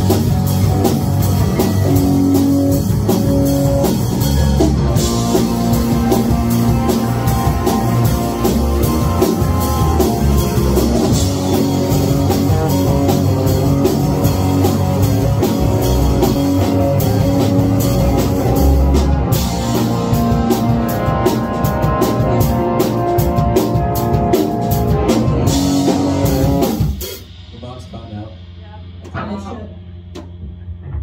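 Rock band playing loud in a rehearsal room, with electric guitars, bass and drum kit. The song stops suddenly about three-quarters of the way through, leaving low room noise.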